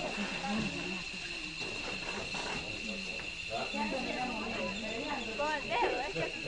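Indistinct chatter of several voices, not close to the microphone, over a steady high-pitched whine that runs on without a break; the voices pick up briefly near the end.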